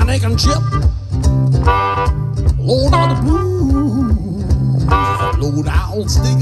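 Acoustic blues boogie: an acoustic guitar keeps a steady low boogie rhythm while a harmonica plays a solo over it, with two long held notes and bent notes between them.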